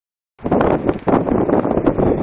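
Strong gusty wind buffeting the microphone, a loud rumbling roar that swells and dips irregularly, cutting in abruptly about half a second in.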